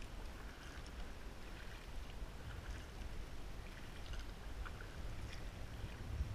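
Kayak paddle strokes: the blades dip and splash in calm water and drip between strokes, alternating sides, over a steady low rumble.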